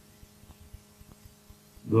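A pause in a man's speech: faint steady hum in the recording, with a few faint ticks. His voice starts again near the end.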